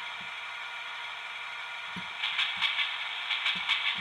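The sound decoder in an HO-scale Athearn GP35 model diesel locomotive plays its engine sound steadily through its small speaker. About two seconds in, a rapid run of clicks starts: the decoder's clackety-clack rail-joint sound effect.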